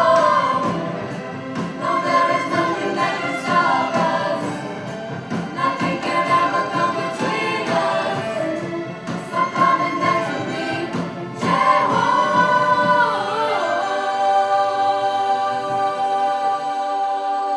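Mixed choir singing with a string orchestra, live and loud. About two seconds before the end the music settles into a long held chord.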